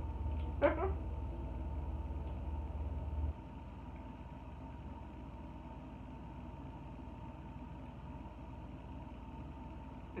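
A steady low background hum that cuts off abruptly about three seconds in, leaving faint room noise with a thin steady high whine underneath.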